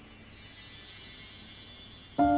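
A quiet pause: a faint, steady high hiss that swells slightly, with no distinct sound in it.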